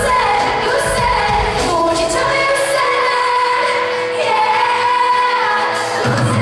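Live pop band with a female lead singer holding long sung notes into a handheld microphone. The bass and drums drop away for a few seconds in the second half, leaving the voice over lighter accompaniment, before the full band returns.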